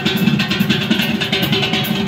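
Hollow-body electric guitar playing a quick run of picked notes in Azerbaijani wedding music, over a steady percussion beat from the band.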